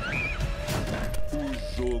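Horror film trailer soundtrack: a steady ominous drone with eerie sound effects, including a short high wavering tone near the start. A voice begins speaking near the end.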